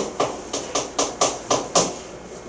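Quick sharp taps of writing strokes on a classroom board, about eight in under two seconds, as a short word is written up.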